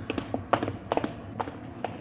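Radio-drama sound effect of footsteps walking on a hard surface: a handful of separate, unevenly spaced steps, about two or three a second.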